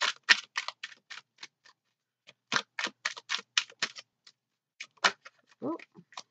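A deck of tarot cards being shuffled by hand, the cards clicking against each other in quick runs: one burst at the start, a second after a short pause, and a few more clicks near the end.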